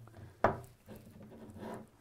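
Handling of an unbuckled nylon belt as a paracord loop is threaded onto it: a single sharp click about half a second in, then faint rubbing.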